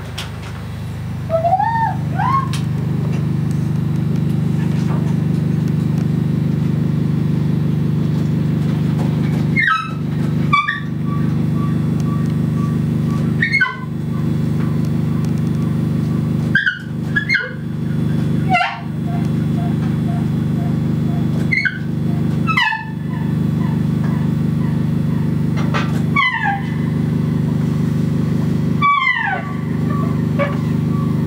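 Live experimental electronic music: a steady low drone that drops out briefly every few seconds, with tenor saxophone playing above it in swooping, falling phrases and held notes.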